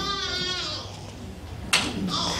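A man's voice trailing off in a drawn-out, wavering tone that fades within the first second, then a quick breath into a handheld microphone near the end.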